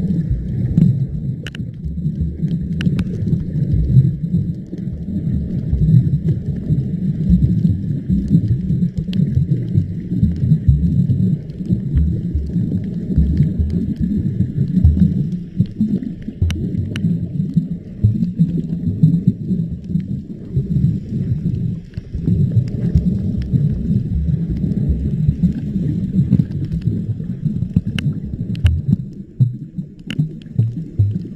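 Muffled, low underwater rumble of water moving around a submerged camera, rising and falling unevenly, with a few faint scattered clicks.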